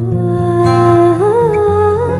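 Malayalam Christian devotional song: a voice holds one long note, then slides up with a slight waver about a second in, over low, steady accompaniment.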